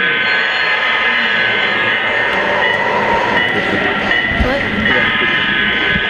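Sound-equipped HO-scale model diesel locomotive blowing its multi-chime horn through its small onboard speaker: one long blast through the first two seconds, then a second starting about five seconds in. Crowd chatter runs underneath.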